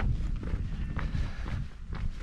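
Wind rumbling low and unevenly on the microphone, with footsteps on a dirt track.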